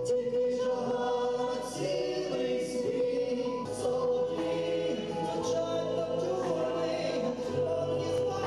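A song from a stage musical: singers on handheld microphones over modern amplified backing music, with choral backing vocals and a long held note underneath.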